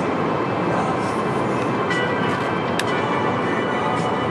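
Steady road and engine noise inside the cabin of a moving car, with one brief sharp click a little under three seconds in.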